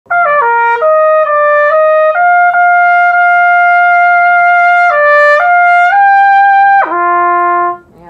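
Solo trumpet on a LOTUS mouthpiece: a quick falling run of notes, a long held note of nearly three seconds, a few short notes stepping up, then a slur down an octave to a low note held for about a second before it stops.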